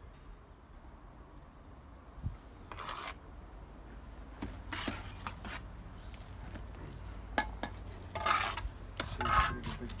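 Steel brick trowel scraping and clinking against brick and mortar in a run of short, irregular scrapes, the loudest near the end. This is the sound of a bricklayer trimming off the mortar squeezed out of the joints as a brick is laid.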